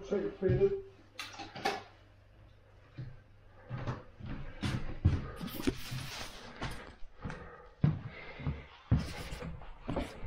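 Handling noise from a handheld camera being picked up and carried: irregular clicks, knocks and rustling, a few sharp clicks early on, then a short quiet spell before a dense run of knocks and rustles.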